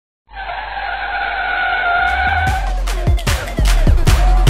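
Tyre-screech sound effect: a steady high squeal that starts suddenly and fades out after about two and a half seconds. Electronic dance music with a heavy kick-drum beat comes in under it about two seconds in.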